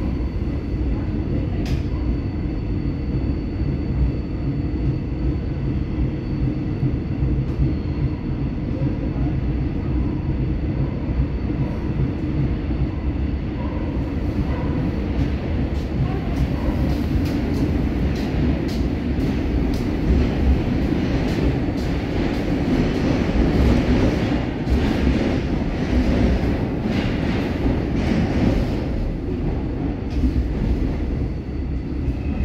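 Cabin sound of a new Woojin-built Korail Line 3 electric multiple unit running along the track: a steady low rumble of wheels and running gear. From about halfway through, a harsher rail noise with rapid clicks and clatter joins it and the sound grows slightly louder.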